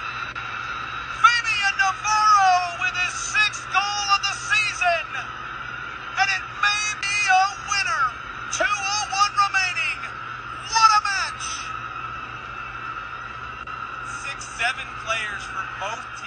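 Excited high-pitched shouts and shrieks of celebration after a goal, in short rising-and-falling cries that come in clusters, thinning out after about eleven seconds and returning briefly near the end. Underneath runs a steady high whine and a low hum.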